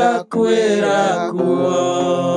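Live mugithi song: a man singing into a studio microphone over electric guitar. The singing breaks off for a moment about a quarter second in, then goes into a long held note from about a second and a half.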